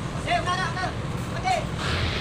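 Two short, high-pitched shouted calls from a voice over a steady low engine rumble on a ferry's vehicle deck, with a hiss starting near the end.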